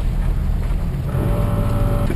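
Off-road Jeep engine running with a dense low rumble as the vehicle crawls over gravel; about a second in a steady whine joins it and holds.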